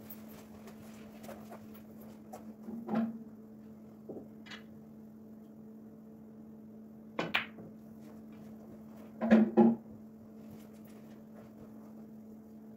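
Snooker break-off: a sharp click of the cue tip striking the cue ball about seven seconds in, then, about two seconds later, the loudest cluster of clicks as the cue ball hits the pack of reds and the balls knock together. A couple of softer knocks come earlier, over a steady low hum.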